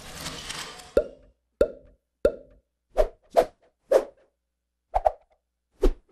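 A string of short cartoon-style pop sound effects, nine in all at irregular spacing, each a quick hollow 'bloop'. They follow the fading tail of a whooshing sound effect at the start.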